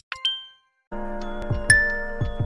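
A bright chime rings out and fades at the start. About a second in, a music track begins, with a sharp bright ding over it near the end.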